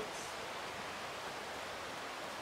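Steady rushing of a creek's flowing water, an even hiss with no other events in it.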